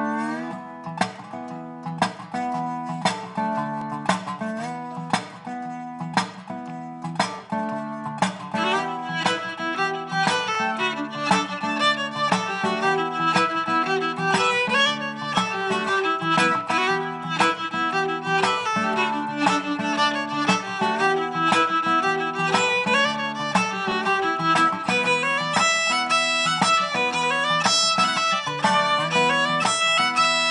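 Acoustic bluegrass band playing live: fiddle carrying the melody over banjo, mandolin, acoustic guitar, dobro and upright bass. The band comes in together on a steady plucked beat of about two strokes a second and fills out about eight seconds in.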